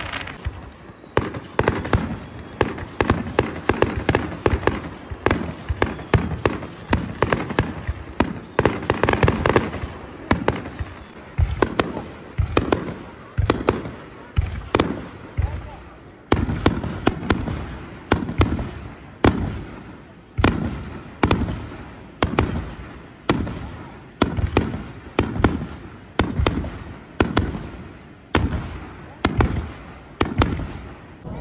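Aerial fireworks shells bursting overhead at close range: a steady string of sharp bangs, about one or two a second, each trailing off in a rumble.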